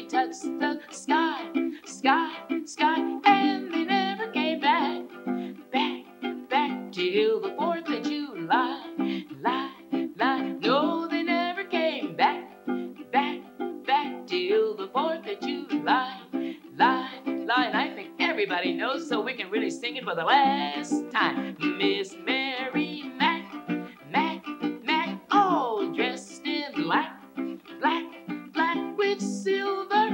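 Baritone ukulele strummed in a steady rhythm, with a woman's voice singing along.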